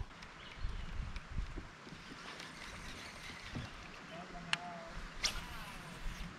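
Quiet open-air river ambience with a few faint knocks of gear being handled in a plastic kayak, and a brief faint call a little after four seconds in.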